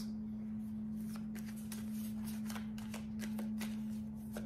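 Tarot cards being shuffled by hand: a run of soft, irregular card clicks and slides, over a steady low hum.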